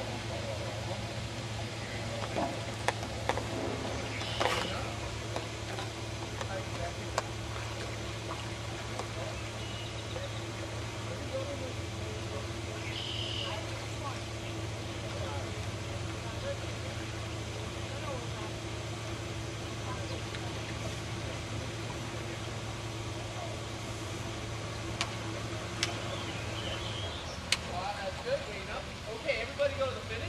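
Faint, indistinct voices of people around the rowing barge over a steady low hum, with a few short sharp knocks now and then.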